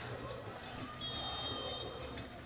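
A steady, high-pitched whistle sounds for about a second, starting halfway through, over low background noise.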